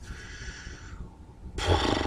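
A thinking pause in conversation: faint breathing, then a short, louder breathy exhale through the mouth or nose about one and a half seconds in.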